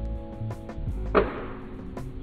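Background music, with a single sharp snap and fading whoosh a little over a second in as a balloon slingshot is released.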